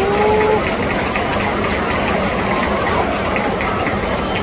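Steady murmur of a ballpark crowd, with one short held shout from a spectator at the very start.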